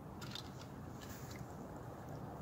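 Faint small clicks and scrapes of a wooden toy boat and its string being handled as it is lowered to the water, over a low steady background hum.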